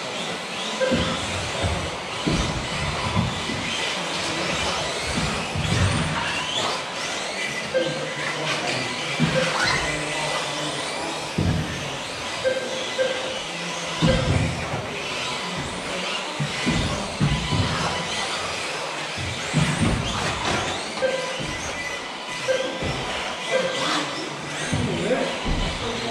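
Electric 1/10 scale 2WD off-road RC buggies racing on an astroturf track: motor whines rise and fall as they accelerate and brake, with frequent thumps and knocks from the cars landing and striking the track.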